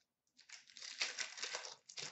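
Foil wrapper of a hockey card pack crinkling as it is handled, a dense crackle that starts about half a second in and lasts nearly two seconds.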